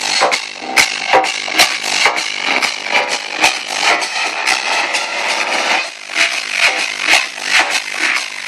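Loud trance music played over a club sound system, with a steady four-on-the-floor kick drum, recorded distorted on a phone microphone. The kick thins out for a couple of seconds past the middle, then returns.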